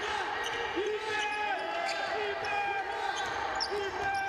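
Basketball game sound on a hardwood court: sneakers squeaking in short, scattered chirps and the ball bouncing, over steady arena background noise.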